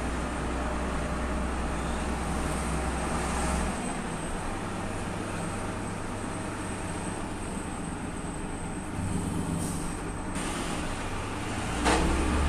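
Heavy lorry's engine and road noise heard from inside the cab while driving slowly through town. A deep engine drone drops away about four seconds in, leaving a lighter steady hum.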